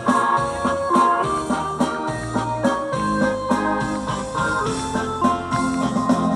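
Live band playing an instrumental passage without vocals: organ-like electronic keyboard chords over bass guitar and drums.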